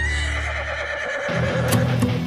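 A horse whinny sound effect: one long, wavering call falling in pitch over a low drone. About a second and a half in, a drum-and-bass music beat comes in.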